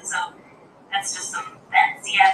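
A voice speaking in short phrases with pauses between them, played back from a computer.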